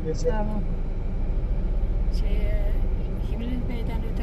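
Steady low rumble of a Fiat Egea Cross with a 1.6 Multijet diesel engine, heard inside the car's cabin.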